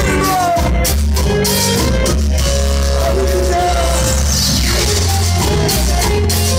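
Live rock band with a singer playing loud through a PA, heard from within the crowd on a phone microphone, heavy in the bass. A high falling sweep runs down about four seconds in.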